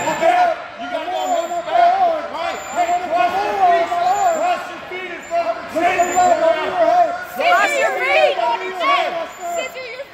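Indistinct overlapping voices of coaches and spectators calling out, with higher-pitched voices joining in near the end.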